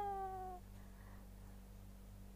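A woman's long, whining cry of pain, a held "ahh" that falls slightly in pitch and fades out about half a second in, as a peel-off mask is pulled from the skin of her forehead.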